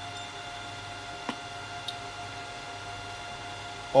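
Steady electrical hum and hiss with a faint high whine from the running radio and amplifier bench setup, while the amplifier is keyed on high with no one talking into the mic. Two soft clicks come about a second and a half and two seconds in.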